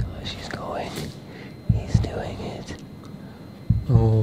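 A man whispering under his breath in two short breathy stretches, with a few low thumps at the start and just under two seconds in.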